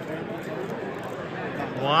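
Steady background noise with faint, indistinct distant voices; a man's close 'wow' begins at the very end.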